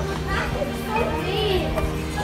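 Children's voices chattering and calling out, with a few high calls, over background music with steady held notes.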